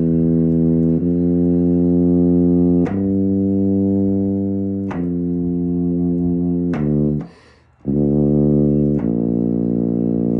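E-flat tuba playing a string of sustained low notes of about two seconds each, moving from note to note without a break. Shortly after the middle it stops for a quick breath, then carries on with more held notes.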